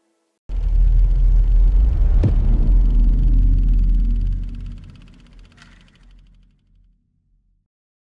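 A deep cinematic boom-and-rumble sound effect, the kind used for a trailer's closing title. It starts suddenly and loud, has a sharp hit about two seconds in, then fades away over the next five seconds.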